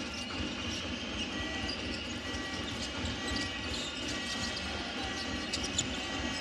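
Basketball being dribbled on a hardwood court over the steady murmur of an arena crowd, with short sharp clicks and knocks scattered through it, most of them near the end.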